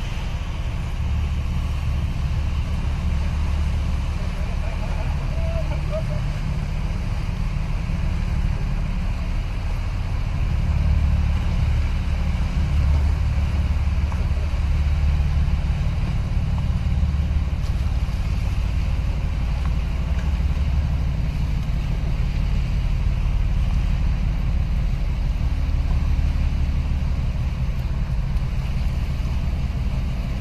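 Steady low rumble of a boat under way, with water and wind noise.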